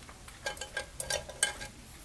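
A run of light clicks and scratchy ticks from small hobby tools being handled, about half a second to a second and a half in.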